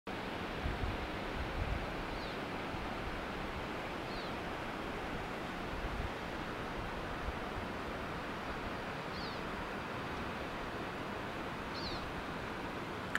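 Steady rushing outdoor noise with low rumbles of wind on the microphone, and four faint, short, high descending chirps spread through it.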